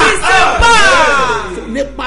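A man shouting loudly without clear words: a few short syllables, then one long cry that falls in pitch and fades away.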